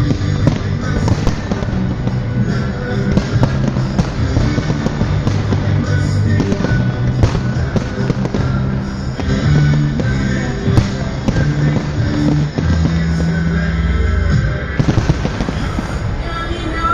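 Fireworks bursting and crackling over loud music with held bass notes, bangs coming every second or so throughout.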